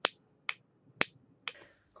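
Tactile push-button switch on a breadboard clicked four times, about twice a second, the last click weaker. Each press switches on an LED in an Arduino circuit.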